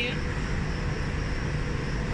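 Steady low rumble of railway-platform background noise, with a faint steady hum.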